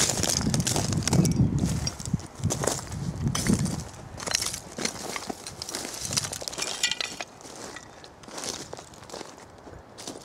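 Footsteps crunching and clinking over loose shale fragments on a scree slope, heaviest in the first four seconds and fainter after.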